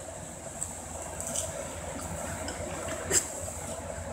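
Steady low background hiss and hum, with a few faint clicks and one sharper click about three seconds in.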